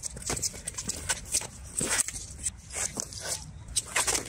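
Close-range sparring with a sword and a short stick: irregular short knocks, clacks and scuffs from weapon contacts and quick footwork on a rubber running track, with a louder knock about two seconds in.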